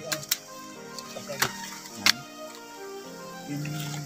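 Background music with long held notes, cut by three or four sharp snips of hand pruning shears cutting coffee branches, the loudest about two seconds in.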